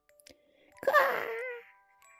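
A tabby cat's single drawn-out meow, sliding down a little in pitch and trailing off, over soft chiming background music.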